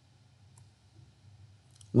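Near silence with a faint low room hum and a single faint click about half a second in, then a man's voice starts speaking right at the end.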